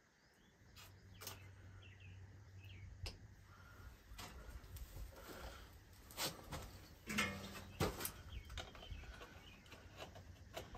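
Faint scattered clicks and scrapes of a new pistol-grip grease gun being handled and assembled, its metal barrel screwed onto the head, coming more often after about four seconds. A low steady hum and birds chirping sit in the background.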